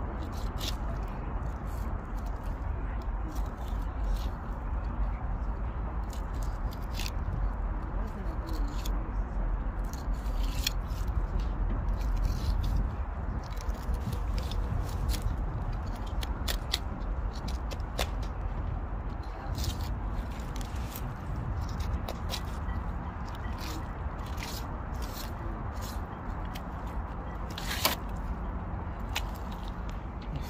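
Fillet knife cutting a striped bass fillet away from the backbone and ribs: irregular small clicks, crackles and scrapes as the blade works along the bones, over a steady low rumble.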